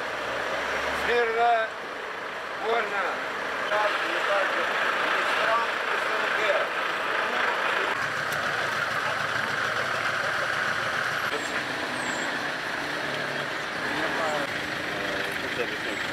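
Outdoor vehicle and engine noise, a steady din, with indistinct voices in the first few seconds.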